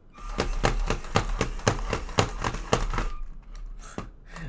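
LEGO SPIKE Prime robot's drive motors running with a steady whine and regular clicking about four times a second, stopping about three seconds in. The robot has set off when it shouldn't, triggered by the color sensor reading blue.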